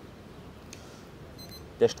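Meat thermometer alarm giving a quick run of high beeps starting about a second and a half in. It signals that the smoked beef shoulder has reached 90 °C core temperature.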